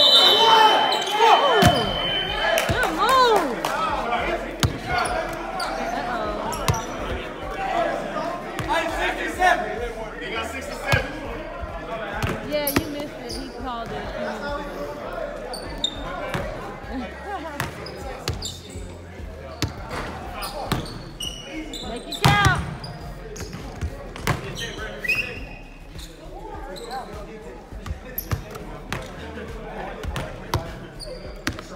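Basketball bouncing on a hardwood gym floor, with players' voices, all echoing in a large hall.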